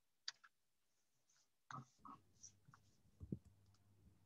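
Near silence broken by a few faint, scattered clicks, a sharp one shortly after the start.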